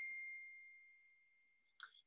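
A faint single high ding that fades away over about a second, with a faint click near the end.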